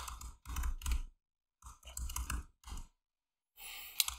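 Two short bursts of typing on a computer keyboard, followed near the end by a soft breath.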